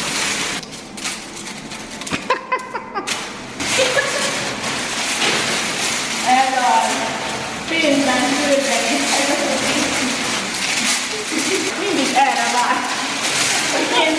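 Heaps of toy gold coins clinking and rattling in a bathtub as handfuls are scooped up and poured out, a dense run of small clicks that thickens after about three seconds, with voices over it.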